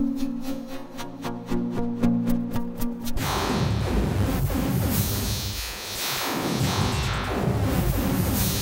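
Electronic sound-design preset played on Reaktor's Metaphysical Function software synthesizer. For the first three seconds it is a steady low pitched drone with rapid, even pulsing. It then switches abruptly to a dense, noisy swirl of gliding pitches.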